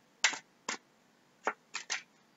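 Oracle cards being handled and shuffled by hand: about five short, sharp clicks as the cards knock and snap together, two of them close together near the end.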